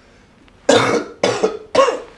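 A man coughing three times in quick succession, about half a second apart, starting just under a second in; the coughs are loud.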